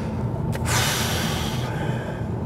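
Steady low cabin drone of a Volkswagen Golf GTI Clubsport's two-litre turbo engine and tyres while cruising. A hiss lasting about a second comes near the middle.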